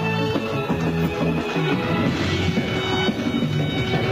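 Bulgarian pop-folk song played live by an amplified band: an instrumental passage with a steady beat and sustained bass notes.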